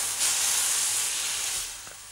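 Food sizzling in a hot pan on a gas stove: a steady hiss that dies away near the end.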